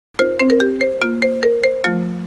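Smartphone ringing for an incoming call: a ringtone melody of short, quick notes, about five a second.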